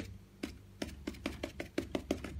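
Stiff bristle brush stabbed repeatedly against a stretched canvas, making a quick, uneven series of light taps, several a second, as acrylic paint is dabbed on.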